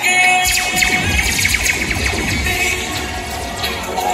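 Loud music with a heavy bass that comes in about half a second in.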